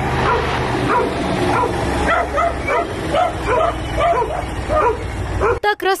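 A dog barking in quick, repeated yaps, about three a second, over a steady low rumble and outdoor noise.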